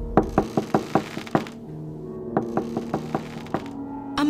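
Rapid knocking on a door, two quick runs of about six knocks each, the second starting a little over two seconds in, over steady background music.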